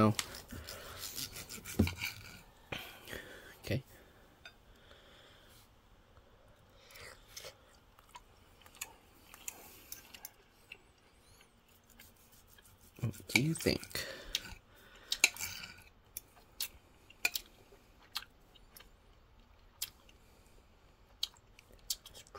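A serrated steak knife sawing through a thick grilled top sirloin steak, held with a fork, with scattered clicks and scrapes of the cutlery against the plate. It is mostly quiet between the clicks, with a louder patch of sounds about two-thirds of the way through.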